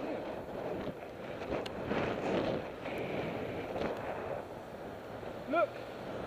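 Wind rushing over a cyclist's helmet-camera microphone while riding, mixed with road traffic noise from a car close by.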